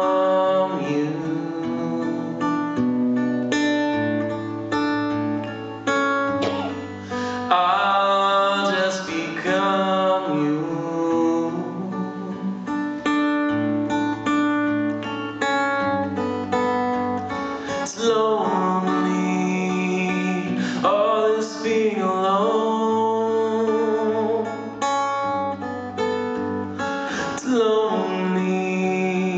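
Acoustic guitar playing an instrumental break in a live song, a picked melody over held low notes, with a wavering held melody line in the second half.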